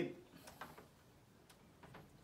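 Faint ticks and light scratching of a felt-tip marker writing on a whiteboard.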